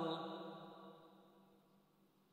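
A man's chanting voice through a microphone holds a long note of a mourning recitation, then fades away over the first second and a half, leaving near silence.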